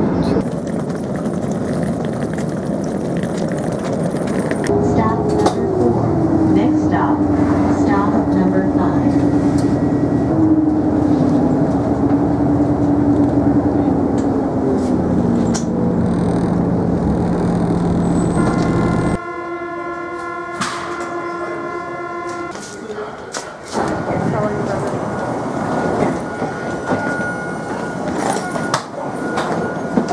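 Airport people-mover train running: a steady rumble with a motor whine that falls in pitch and then steps lower. After a sudden break about two-thirds in, a steady chord-like tone sounds for about three seconds before the running noise returns.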